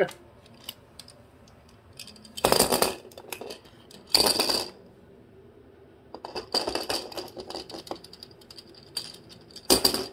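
Plastic baby teething-ring rattle toy clattering and rattling against a hardwood floor as a cockatoo handles it with its beak, in four bursts with quieter pauses between.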